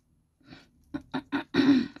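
A woman clearing her throat: a few short catches, then a longer, louder rasp near the end.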